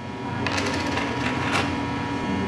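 A small machine running with a rapid, even clatter, starting about half a second in.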